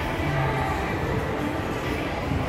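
Steady shopping-mall background noise: a continuous low rumble with faint music over it.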